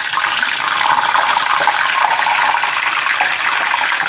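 A whole wet artichoke deep-frying in hot oil in a small stainless steel pot: a loud, steady sizzle and crackle as the water from its hot-water soak boils off and spits in the oil.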